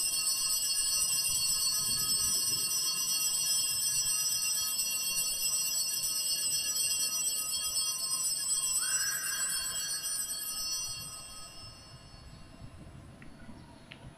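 Altar bells rung continuously at the elevation of the host during the consecration, a bright steady jingling ringing that dies away over the last few seconds.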